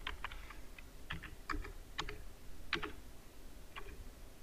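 Computer keyboard being typed on: about a dozen short keystrokes at an uneven pace, as a password is entered.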